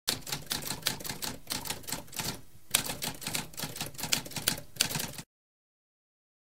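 Typewriter keys clacking in a quick run, several strikes a second, with a brief pause about halfway. The typing stops suddenly a little after five seconds.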